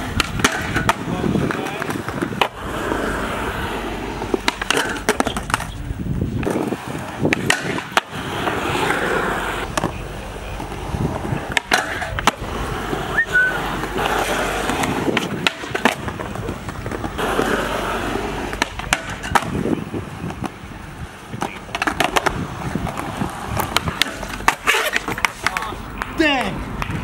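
Skateboard wheels rolling on concrete, broken by repeated sharp clacks of tails popping and boards slapping down as tricks are tried on a low portable rail.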